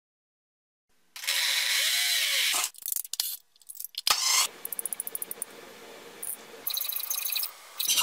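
A quick run of plumbing-work sounds. It opens with a loud rushing hiss, then comes a cluster of clicks and knocks and a fast run of short ticks. Near the end there are repeated hacksaw strokes on copper pipe.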